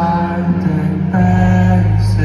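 Live rock band playing in a large arena, heard from the audience: a sustained chord of held notes over a steady bass, with the bass shifting about a second in.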